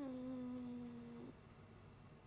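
A woman's closed-mouth "mmm" hum, a thinking sound held at one steady pitch for just over a second, then cut off.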